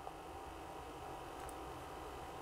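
Quiet room tone: a faint steady hum and hiss, with a small tick right at the start.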